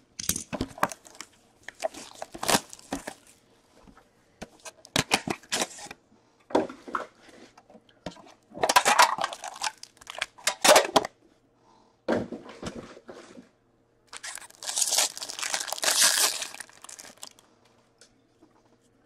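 An Upper Deck Premier hockey card box being torn open and its pack's wrapper ripped and crinkled, in a string of short sudden bursts, with one longer crinkling tear about fifteen seconds in.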